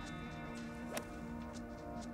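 A golf club striking the ball on a fairway approach shot: one crisp click about a second in, over background music.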